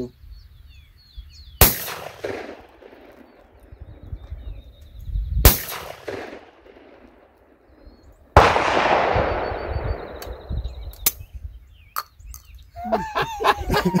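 Two shotgun shots at clay targets, about four seconds apart, each a sharp crack with a short echo. About eight seconds in a sudden, louder burst of noise follows and dies away over a second or two.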